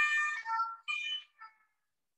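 Emergency siren with steady notes stepping between pitches, like the French two-tone siren. It breaks up and cuts out to total silence about one and a half seconds in.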